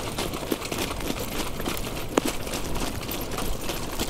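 Wind rumbling over a microphone carried in a jog cart behind a trotting horse, with light scattered clicks and rattles from hooves and cart and one sharp knock about two seconds in.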